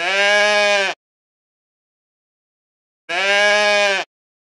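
Goat bleating twice: two calls of about a second each, about three seconds apart.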